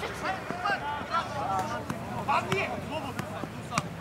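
Scattered shouts from players and onlookers across an open football pitch, several voices calling at once, with a couple of sharp knocks in the second half.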